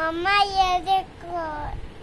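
A young girl's voice in drawn-out, sing-song phrases: one long phrase, then a shorter one just past the middle.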